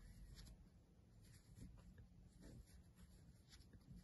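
Near silence, with a few faint, brief rustles of a crochet hook pulling chenille velvet yarn through stitches.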